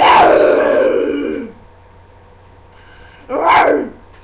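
A girl imitating a lion's roar with her voice: one long roar of about a second and a half, then a shorter second roar near the end.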